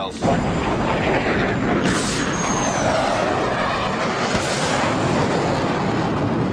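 Fighter jet engines giving a steady, loud roar in flight, with a faint falling whistle about two seconds in.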